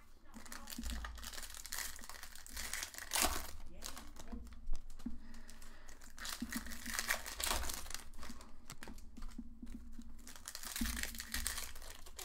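Foil wrappers of baseball card packs being torn open and crinkled by hand, in irregular rustling bursts, the loudest about three and five seconds in.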